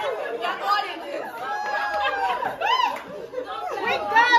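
A group of women's voices chattering and calling out over one another, indistinct. About three-quarters of the way through, one voice gives a high exclamation that rises and falls.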